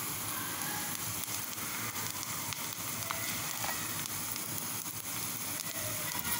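Onion, garlic, dried red chillies and freshly added curry leaves frying in hot oil in a small steel saucepan: a steady sizzle with a few faint pops.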